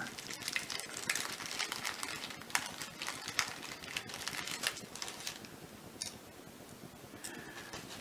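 Small plastic zip-top bag crinkling as fingers work it open and handle it: a faint run of little crackles that thins out and fades over the second half.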